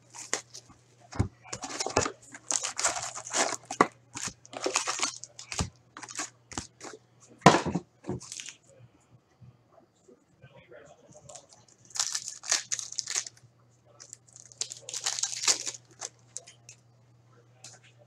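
Plastic wrapping being torn off a retail box of Upper Deck hockey cards: a run of quick crinkling, ripping tears. After a short quiet stretch, two more bursts of tearing come as a foil card pack is ripped open. A faint steady low hum sits under it all.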